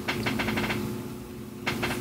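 A quick run of light clicks in the first moment, with a few more near the end, over a steady low electrical hum.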